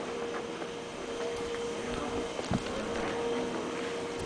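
Handling noise from a handheld camera being swung about: rustling and light knocks, with a thump about two and a half seconds in, over a steady hum.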